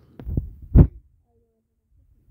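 A few short, dull thumps of cards and a hand landing on the table-top in the first second, the last one the loudest.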